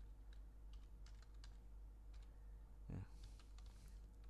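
Faint keystrokes on a computer keyboard typing a short command, a few irregular key clicks a second.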